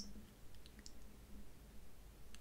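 Quiet room tone with a faint low hum and a few tiny, soft clicks about half a second in.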